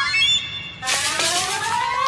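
Cartoon sound effects: a quick run of short rising squeaks, then, about a second in, a rush of noise under a long rising whistle.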